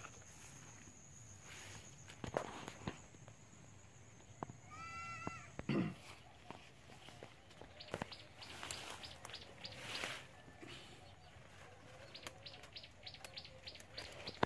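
Quiet outdoor farm ambience: scattered clicks and rustles from moving through and handling leafy plants, under a steady high insect drone that stops about six seconds in. A short bird call sounds about five seconds in.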